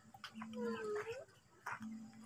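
A faint animal call: one pitched whine, under a second long, that dips and then rises, over a faint steady hum.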